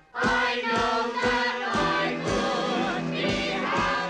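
A man and a woman singing a show tune with musical accompaniment. It comes in sharply right after a brief silent break and keeps a regular beat about twice a second.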